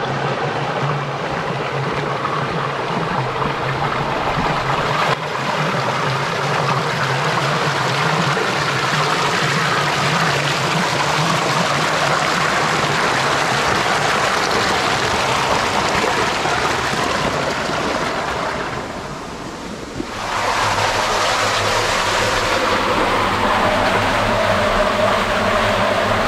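Water rushing loudly and steadily through a stone falaj irrigation channel. The rush dips briefly about 19 seconds in, then comes back.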